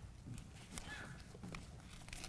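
Microphone handling noise: a few soft knocks and rustles, with a low room rumble, as a handheld microphone is passed to and taken up by an audience member.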